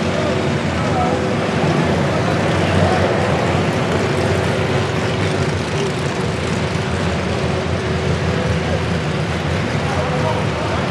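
Demolition derby car engines running in an indoor arena: a steady, loud, continuous rumble, with people's voices mixed in.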